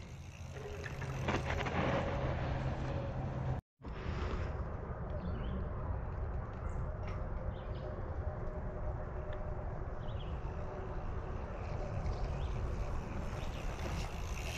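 Outdoor ambience dominated by wind noise on the camera microphone, with a steady low hum for the first few seconds. The sound cuts out briefly to silence about four seconds in, then the wind noise carries on evenly.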